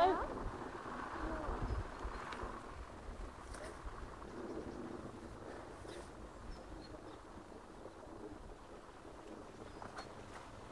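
Quiet outdoor background: a low rumble of wind on the microphone for a second or so, a few faint voices and the odd faint click over a low steady hiss.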